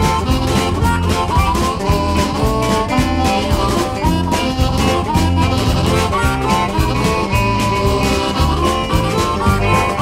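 A blues band playing an instrumental break between sung verses: electric guitar, upright double bass and drums keeping a steady beat, with harmonica.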